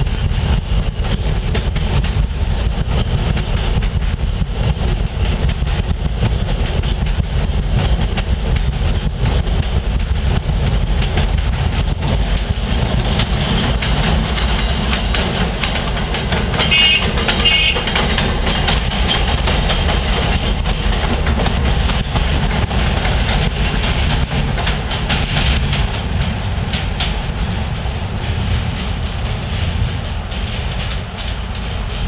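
New York subway trains on elevated track: an R160 F train pulling out and a track geometry car rolling past, a steady loud rumble and clatter of steel wheels on the rails. A brief high squeal rises out of it about seventeen seconds in.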